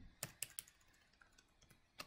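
Faint keystrokes on a computer keyboard: three quick taps in the first second, then a few fainter single taps.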